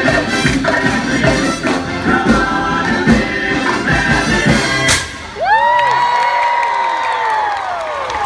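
A live brass band plays upbeat music with a tambourine. About five seconds in, a confetti cannon goes off with one sharp bang and the music stops. The crowd then cheers and whoops, with one long high whoop that falls away.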